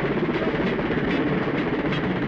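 Jet aircraft engine noise, a loud steady rushing rumble that swells up just before and holds level.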